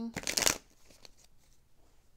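A tarot deck being shuffled: a quick, loud burst of card shuffling lasting about half a second, followed by faint soft card handling.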